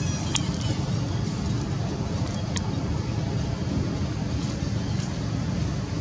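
Steady low rumbling background noise, with two short sharp clicks near the start and about two and a half seconds in.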